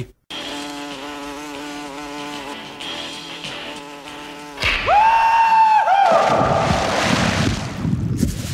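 A steady buzzing drone, like an insect, for about four seconds. It is followed by a loud, high held tone that breaks off twice, then a rising rumble.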